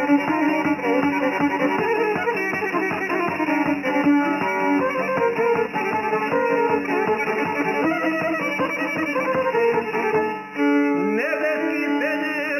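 Serbian traditional folk music: a violin melody over a plucked long-necked lute keeping a steady strummed beat. About ten and a half seconds in the playing dips briefly and a new phrase begins with a rising glide.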